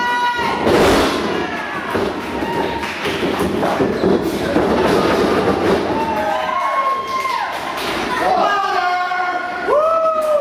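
A wrestler slammed onto the wrestling-ring mat: one loud, deep thud about a second in. Spectators shout and call out over a noisy hall afterwards.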